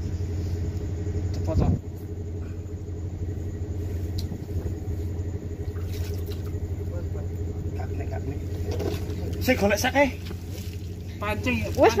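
An engine runs with a steady low hum. A louder, noisier stretch cuts off suddenly about a second and a half in, and short bursts of voices come in near the end.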